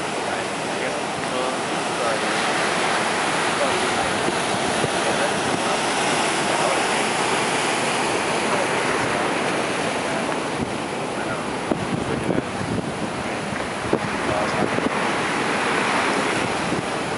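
Ocean surf breaking and washing over the reef, a steady rushing noise, with wind buffeting the microphone.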